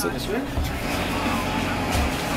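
Steady low hum of a shop's background noise, with a brief faint voice about half a second in.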